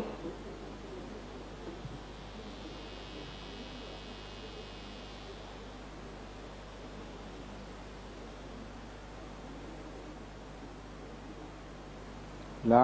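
Room tone through a microphone and sound system: a steady hiss and low electrical hum with a constant high-pitched whine, and no one speaking.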